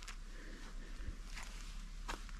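Faint footsteps on dry, gravelly dirt, two soft crunchy steps about a second and a half apart.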